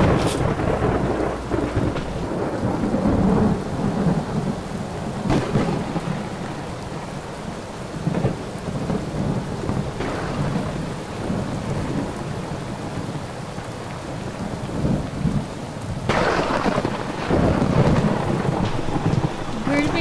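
Heavy rain falling steadily, with thunder rumbling in swells, loudest about three seconds in and again near the end.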